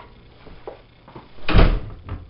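A door shutting with a heavy thud about a second and a half in, after a couple of faint clicks.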